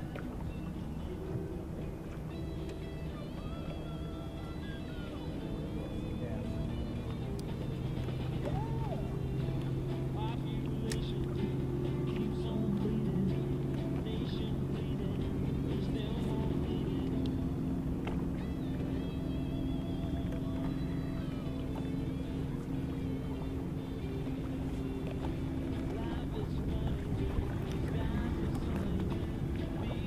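A radio playing music with a voice, over the steady hum of a boat motor.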